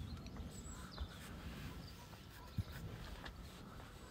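Faint rural outdoor ambience: scattered bird chirps over a low rumble, with two soft knocks, one about a second in and one a little past halfway.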